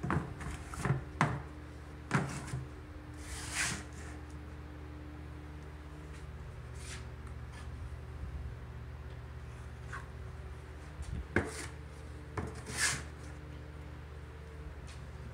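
Drywall knife clacking and scraping against a metal mud pan as joint compound is loaded, with several sharp clacks in the first couple of seconds and again near the end, and brief swishes of the compound being spread on the wall. A steady low hum runs underneath.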